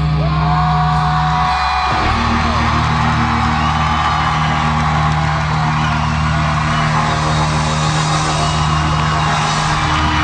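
Live rock band with distorted electric guitars and bass holding long sustained chords, the chord changing about two seconds in, with audience shouts and whoops over it.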